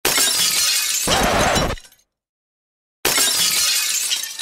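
Edited-in intro sound effect: a loud crash that ends with a deep boom after about a second and a half, a second of dead silence, then a second loud crash starting about three seconds in.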